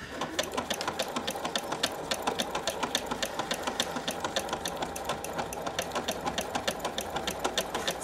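Husqvarna Viking sewing machine stitching a decorative stitch at a steady speed: a fast, even ticking of the needle mechanism that keeps up without a break.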